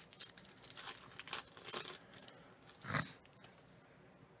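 Foil wrapper of a 2019 Panini Phoenix football hobby pack being torn open and crinkled by hand: a run of faint crackles, thickest in the first two seconds.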